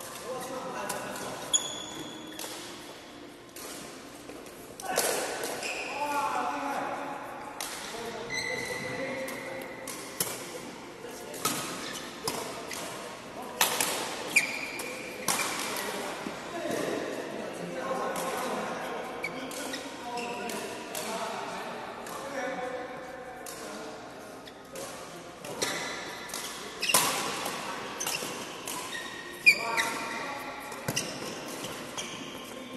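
Badminton play in a reverberant sports hall: sharp racket strikes on the shuttlecock at irregular intervals, with short squeaks of shoes on the court floor and voices in the background.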